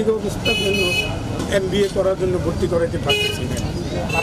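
A man speaking in Bengali, close to the microphone, over street traffic noise. Short high-pitched vehicle-horn toots sound twice: about half a second in and again about three seconds in.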